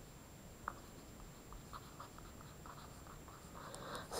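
A pen writing on paper: a run of faint, short strokes as figures and symbols are written out, with a small tap just under a second in.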